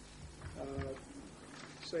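A man's hesitant speech: a drawn-out 'uh', then the start of a word near the end, over a steady low hum.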